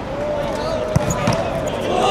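A football kicked hard once, a single sharp thud about a second in: a penalty kick being taken.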